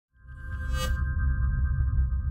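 Electronic intro sting: a held synth chord over a low bass drone, fading in quickly, with a bright shimmer just under a second in.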